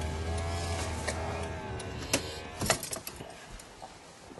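A car's electric power window motor running with a steady hum, then stopping about one and a half seconds in, followed by two sharp clicks.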